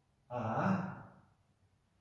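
A man's voice saying a single drawn-out "A" that trails off after about a second.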